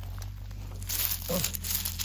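Fingers brushing over gravel pebbles and dry leaves, a dry rustling scrape that gets louder about a second in.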